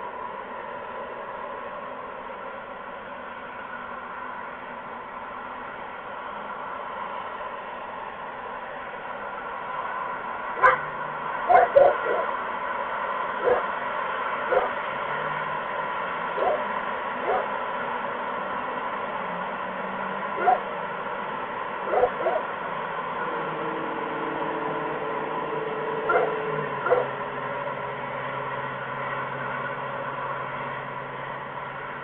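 About a dozen short, sharp animal calls at irregular intervals, starting about a third of the way in, over the steady hiss and hum of the outdoor microphone feed. A faint low drone joins in the last few seconds.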